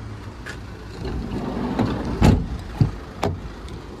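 Handling noise and knocks from the van's doors and body: a sharp thump about halfway through and two lighter knocks near the end, over a steady low rumble.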